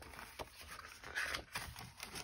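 Faint handling of a paper pad and its plastic packaging: a light tap, then a brief soft rustle of paper as the pad's cover is turned back.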